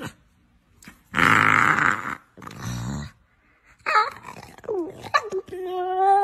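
A pit bull-type dog growling and grumbling in a few short bouts: a loud, harsh one about a second in, a lower one after it, then wavering, rising-and-falling growls. Music starts near the end.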